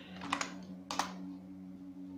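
Computer keyboard keys being pressed: two quick clicks about a third of a second in and a single click about a second in, over a steady low hum.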